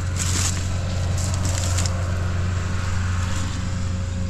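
A steel shovel blade jabbed into root-laced red clay, crunching and scraping in two short bursts in the first two seconds. Under it runs the steady low drone of idling heavy-equipment diesel engines.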